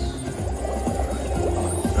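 Video slot machine playing its free-spin bonus music and sound effects over a steady low hum.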